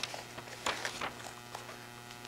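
Quiet room tone with a faint, steady electrical hum and a few soft clicks in the middle.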